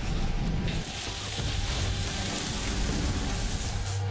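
A steady, loud hiss of noise that fills out across all pitches about a second in, over a low rumble, with music faintly beneath.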